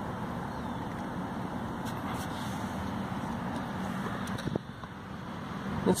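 Steady outdoor background noise, a low even rumble with no distinct event, easing slightly about four and a half seconds in.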